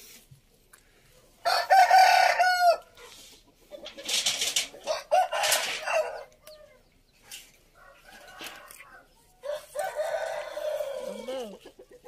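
Roosters crowing: three long crows, the first and loudest about a second and a half in, another near the middle and a third near the end with a falling tail.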